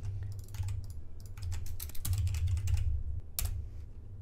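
Typing on a computer keyboard in quick bursts of keystrokes, with one sharper keystroke near the end.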